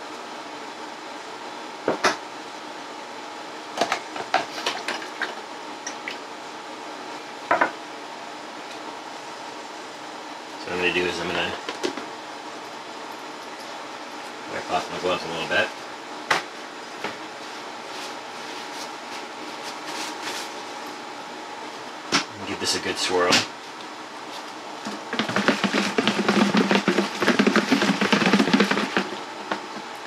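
Scattered knocks and clatter from handling a freshly printed resin part and the things around it. About 25 seconds in comes a few seconds of dense rattling and sloshing as the print is shaken in a plastic tub of alcohol to wash off the uncured resin.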